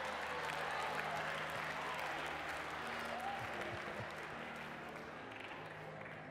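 A congregation applauding, with scattered voices in the crowd; the clapping slowly dies away.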